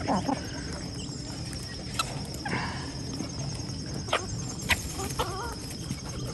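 A flock of chickens foraging on scattered feed, with a steady low background, a few sharp clicks, and a short wavering call about five seconds in.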